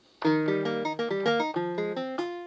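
Ukulele preset of Roland Zenbeats' ZEN-Core synth engine playing a quick run of single plucked notes that starts about a quarter second in, with the last note ringing on.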